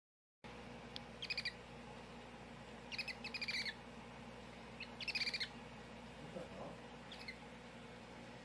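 Baby hedgehog squeaking: four bouts of quick, high-pitched chirps, about a second in, around three seconds, around five seconds, and a fainter one near seven seconds, over a low steady hum.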